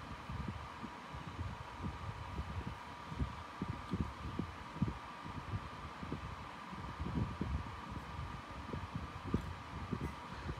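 Faint, irregular low thumps and rumbles with a faint steady hum underneath, like handling noise on the microphone.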